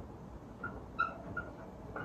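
Dry-erase marker squeaking on a whiteboard as letters are written: several short, high squeaks, the loudest about halfway through.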